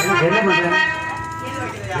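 A held chord on a harmonium fading out over about a second and a half, with a voice over it near the start.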